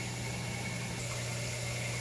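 A steady low hum with a faint hiss behind it, unchanging, with no distinct knocks, pours or other events.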